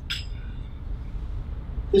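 Low steady hum of a large hall's room tone, with one brief light clink of tableware just after the start.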